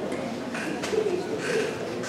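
Indistinct murmur of voices in a large hall, with two brief louder vocal sounds, about half a second and a second and a half in.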